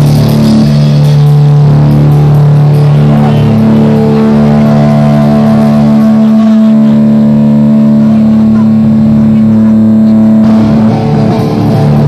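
Electric guitar played through a loud amp, holding long ringing notes that change pitch every few seconds, with little drumming under it.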